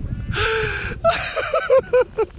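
A person laughing breathlessly in short repeated bursts, with two long gasping in-breaths, over a steady low rumble of wind on the microphone while skiing.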